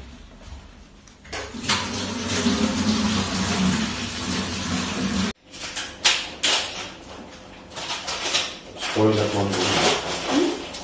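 Scratchy rustling and rubbing noise that breaks off abruptly a little after five seconds in, then returns as scattered short rustles.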